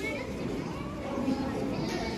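Indistinct murmur of many children talking at once.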